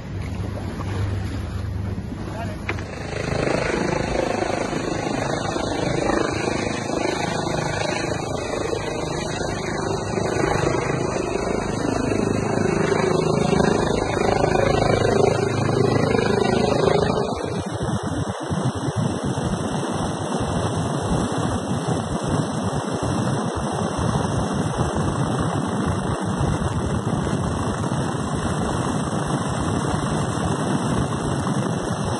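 A rigid inflatable boat's outboard engine runs at sea amid wind noise and indistinct voices. About 17 seconds in, this cuts abruptly to the steady noise of a helicopter in flight, heard from inside the cabin.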